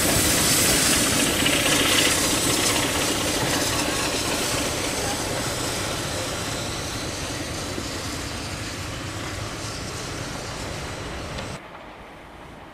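SECR P Class steam tank engine and its carriages moving off. Steam hisses from the front of the engine at first, and the sound fades steadily as the train draws away. It cuts off sharply just before the end.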